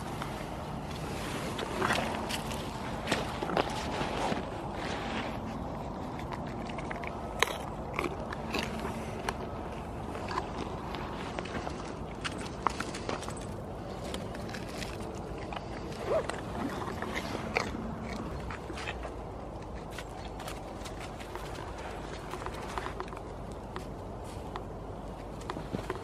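Footsteps crunching on frozen ground strewn with frosty dead leaves: irregular sharp crackles and clicks throughout.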